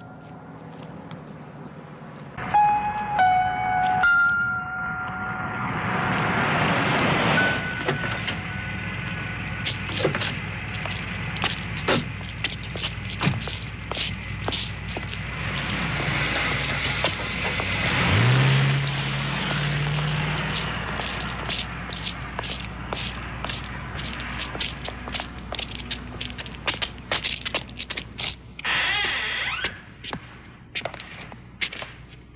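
Film soundtrack: a tense electronic score, first a few held tones, then a dense, clattering noisy texture with a low tone that rises about eighteen seconds in.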